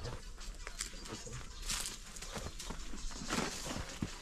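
A climber's shoes and hands scuffing and tapping on the rock of a steep boulder, with a couple of short hissing breaths of effort.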